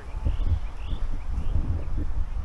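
Wind rumbling on the microphone, with a few faint, short bird chirps.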